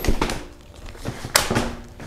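Espiro Fuel compact stroller being unfolded: a light click as the frame starts to open, then a sharp, loud click about one and a half seconds in as it locks open. This hard click is the stroller's normal locking action, not a fault.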